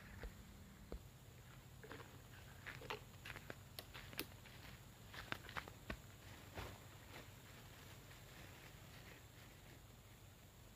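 Faint footsteps and rustling on dry leaf litter, with the crackle of a plastic bag of fertilizer granules being handled: a scatter of soft clicks, most of them between about two and seven seconds in.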